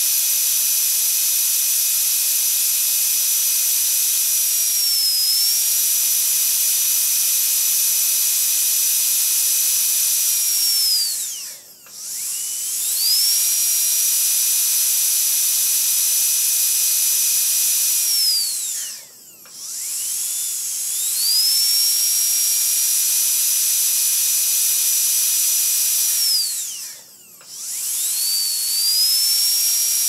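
Dentist's high-speed drill whining at a steady high pitch. It winds down three times, about a third of the way in, about two-thirds in, and near the end, its pitch dropping away each time before it spins back up.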